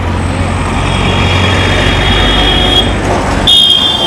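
Deep steady rumble of idling bus engines and road traffic, with two long high-pitched steady tones, the second starting about half a second before the end and louder.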